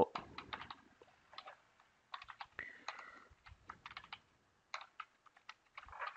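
Typing on a computer keyboard: an irregular run of soft key clicks.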